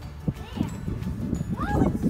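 Children's boots stepping and knocking on a perforated metal playground platform, a run of dull knocks, with a child's short wordless voice that rises and falls near the end.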